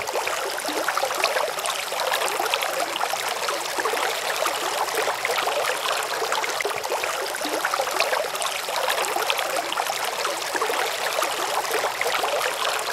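Stream water running and trickling steadily, with a dense crackle of small splashes.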